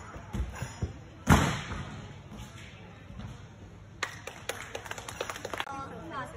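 Gymnast's footsteps on the vault runway, then a single loud bang of the springboard and vault about a second in, ringing in the large hall. Scattered hand-clapping follows near the end.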